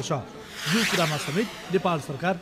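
Men's voices talking, with a hissing rush of noise about a second long in the middle.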